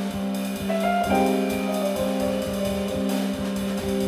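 Live jazz-fusion trio of a Nord Stage 3 keyboard, electric bass guitar and drum kit playing. Held keyboard chords change about a second in, over a steady pulse of low drum and bass hits.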